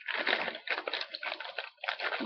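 Plastic packaging wrapper crinkling in an irregular run as it is handled and searched for anything left inside.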